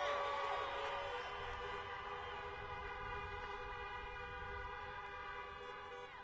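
Many car horns sounding at once, held steady and slowly fading toward the end: a drive-in rally audience honking in place of applause.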